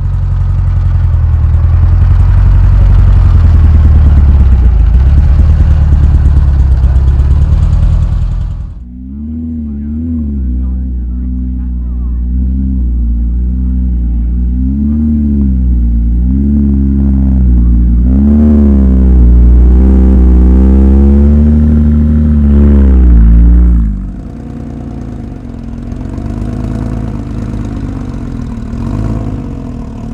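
Porsche engines driving slowly past at close range, one car after another. A deep, loud engine runs for the first eight seconds or so; after a short dip a second engine follows, its pitch rising and falling with small throttle blips, until a quieter engine takes over for the last few seconds.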